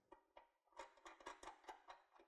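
Near silence with faint, irregular small metal clicks as a ball-stud fitting for a gas bonnet strut is threaded by hand into its bracket.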